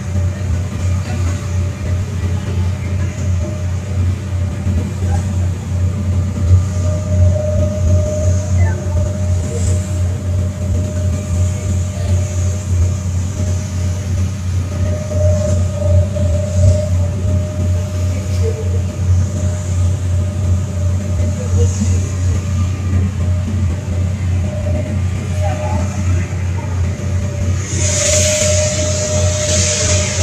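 Passenger ferry's engine running steadily under way, a deep continuous drone with a steady whine above it that swells and fades. A burst of rushing noise comes near the end.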